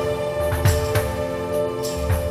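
Live jazz ensemble music: a held note rings steadily over sparse drum and percussion hits, about four strokes across the two seconds.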